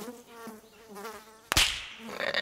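Flies buzzing in a steady drone around an animal's hindquarters, a cartoon sound effect. About a second and a half in, a sudden loud swish cuts across it.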